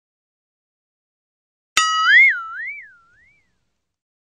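A cartoon "boing" sound effect, starting suddenly a little before the middle: a twangy tone that wobbles up and down in pitch a few times and fades out within about a second and a half.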